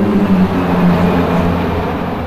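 A formation of twelve Embraer T-27 Tucano turboprop trainers flying past, a steady propeller drone whose pitch sinks slightly as they pass.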